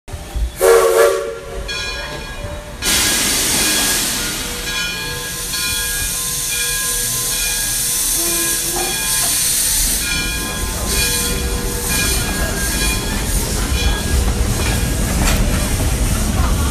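Railway sound effects: a brief multi-tone train warning blast about half a second in, then a long loud hiss with faint steady tones through it. Later comes a heavier rumble of a moving train with scattered clicks, building toward the end.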